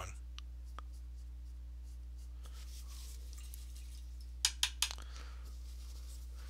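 Faint scratching of an oil-paint brush worked over canvas, with three or four quick sharp clicks close together near the end, over a steady low electrical hum.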